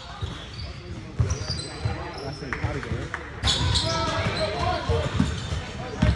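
Basketball bouncing on a gym floor, its thumps echoing in a large hall. Indistinct voices from players and onlookers run underneath, louder in the second half.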